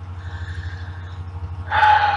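A man's voice hesitating: a soft drawn-out "um", then a louder held "uh" near the end, over a steady low electrical-sounding hum.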